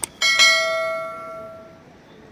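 A single bright bell ding, the notification-bell chime of a subscribe-button animation, struck about a quarter second in and ringing away over about a second and a half, just after a short click.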